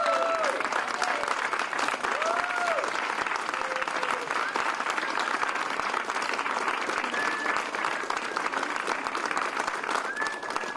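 Audience applauding steadily throughout, with a few voices calling out over the clapping.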